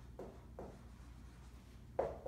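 Dry-erase marker writing on a whiteboard in short scratchy strokes: two in the first half second, quieter through the middle, and a sharper stroke at the very end.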